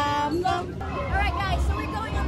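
Several women talking and exclaiming over the background chatter of a crowd, with a steady low rumble underneath. A held, pitched tone sounds in the first half-second.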